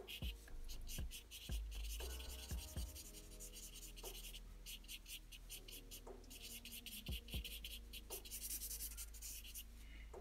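Black felt-tip marker scratching on paper in quick short strokes, filling in a dark patch of shading; faint throughout.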